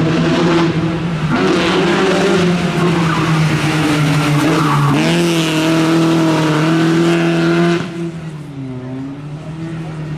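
BMW E30 rally car's engine held at high revs under full throttle, with a brief dip in pitch about five seconds in. About eight seconds in the revs and level fall away as the driver lifts off.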